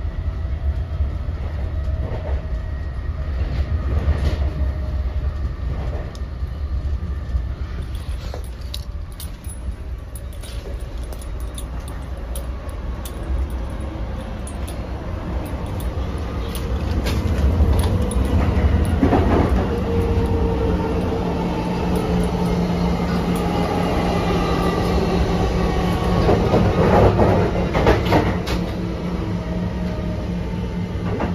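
Interior running noise of an NJ Transit Multilevel passenger coach in motion: a steady low rumble of wheels on rail with scattered clicks and knocks. It grows louder about halfway through, when a steady hum joins in.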